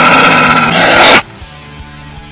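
A loud angry growl voiced for a cartoon wolf, lasting about a second and then cutting off suddenly, with background music continuing underneath.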